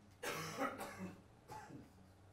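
A person coughing: a burst of coughs starting about a quarter second in, then a shorter cough near the end.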